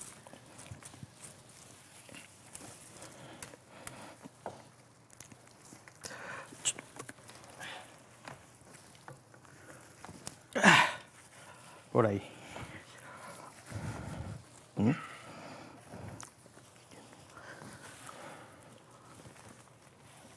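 Pine needles and branches rustling as hands work through the foliage to wire it, with small clicks. Several short sounds that glide up and down in pitch cut in, the loudest about halfway through.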